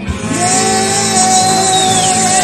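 Live rock band playing, with one long held note sustained over the band.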